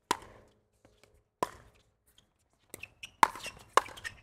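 Pickleball rally: sharp pops of paddles striking the plastic ball, about half a dozen, spaced irregularly and coming faster in the last second and a half.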